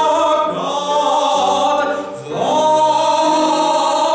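A man singing in a classical, operatic style with piano accompaniment. Long held notes with vibrato; about two seconds in he slides up into a new sustained note.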